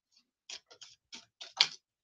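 A quick, irregular run of small, sharp clicks, about nine in two seconds, the loudest near the end.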